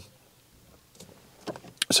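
Near silence inside a parked car for over a second, then a few faint short clicks in the second half, with a man's voice starting right at the end.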